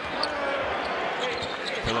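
A basketball bouncing a few times on a hardwood court, over the steady noise of an arena crowd.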